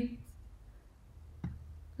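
Quiet room tone with a single faint computer mouse click about one and a half seconds in.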